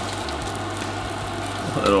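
Salmon cakes sizzling steadily in browned butter in a skillet, over a low steady hum.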